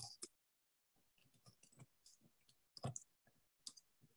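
Near silence broken by faint, scattered clicks and small noises, the loudest about three seconds in.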